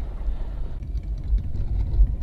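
Low, steady rumble of a car's engine and road noise heard from inside the cabin while driving.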